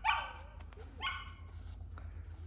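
A dog giving two short, high-pitched barks, one at the start and one about a second in, while it waits in a sit at the start line before being released over the jumps.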